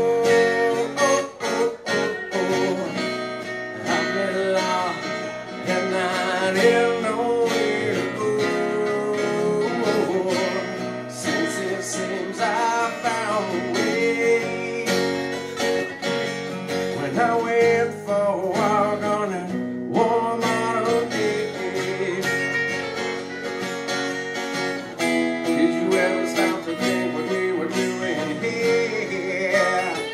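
Two acoustic guitars playing an instrumental break: strummed chords under a lead guitar melody whose notes bend in pitch.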